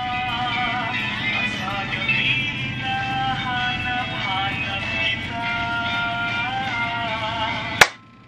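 A recorded pop song playing, a sung melody with held, wavering notes over a steady backing, then stopped suddenly with a click near the end.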